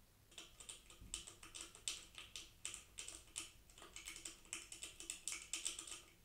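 Rapid, irregular clicking and scratching of a mouse scrabbling against a 3D-printed plastic mouse trap, which is moved by it. The clicks come several a second, start about a third of a second in and stop just before the end.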